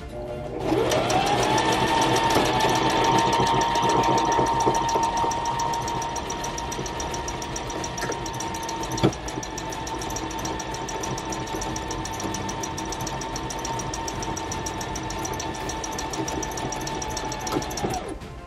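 Brother ST371HD mechanical sewing machine stitching a buttonhole in denim with its buttonhole foot. The motor starts with a rising whine, then runs steadily with a fast, even needle rhythm, gets a little quieter a few seconds in, and gives a single click about nine seconds in before it stops just short of the end.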